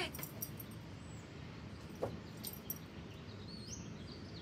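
Quiet outdoor background with a steady low hum and a few faint, thin bird chirps, broken once about halfway by a short sharp sound.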